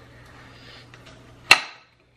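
A single sharp knock about one and a half seconds in, from kitchen items being handled on a hard surface, over a faint steady hum and light rustling.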